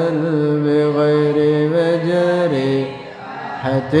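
A man's voice chanting Arabic creed verse in a slow, melodic tune, holding long notes. The note drops about two and a half seconds in, there is a short pause for breath, and a new phrase begins near the end.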